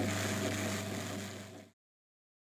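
Motorised drum carder running with a steady hum while wool is fed onto its spinning drums; the sound fades and cuts off to silence near the end.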